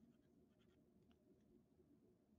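Near silence, with a few faint scratches of a pen drawing on paper.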